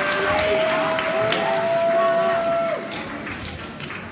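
Audience applauding and cheering in a hall, with a long steady held tone over the clapping; the applause drops away sharply a little under three seconds in.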